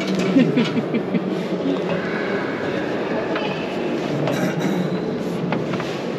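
Steady rumbling ambience of a busy hall with a constant low hum and background chatter, plus a few knocks and clunks as someone climbs into a racing truck's cab.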